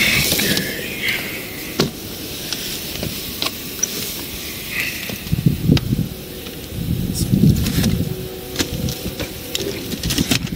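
Rustling, scraping and scattered knocks of items being moved and handed down from a pickup truck's bed, with uneven low rumbling handling noise.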